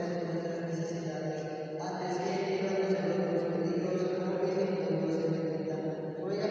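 A congregation of many voices chanting rosary prayers in unison on a steady, even pitch, with a brief break just before two seconds in before the chant resumes.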